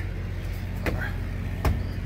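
Steady low hum of an idling truck engine, with two sharp knocks, the second and louder one about one and a half seconds in.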